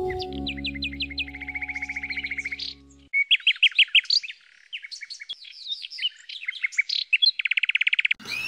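A canary singing: a run of chirping notes and rapid trills. Low sustained music plays under it and stops about three seconds in.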